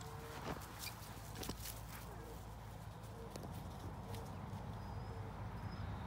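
A car engine running, a low steady rumble, with scattered soft footfalls and knocks on grass.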